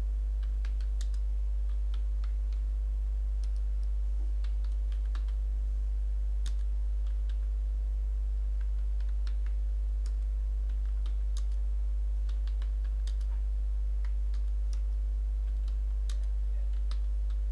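Computer keyboard typing: irregular key clicks, with short pauses between bursts, over a steady low hum.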